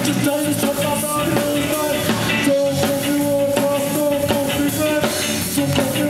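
Ska band playing live: electric guitar, electric bass and drum kit, with long held horn notes from trombone and saxophone over the rhythm.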